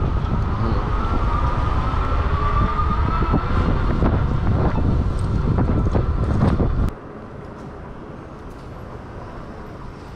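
Wind rushing over the microphone of a moving electric bike, with a faint whine rising in pitch. About seven seconds in it cuts off abruptly to quieter street background.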